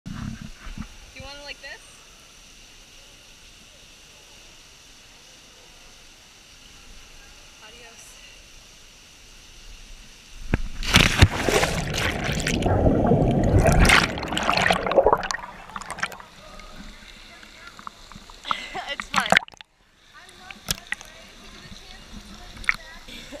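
A loud splash about ten seconds in as the camera plunges into a deep cenote, followed by several seconds of rushing, churning water while it is underwater. Before the plunge there are faint background voices.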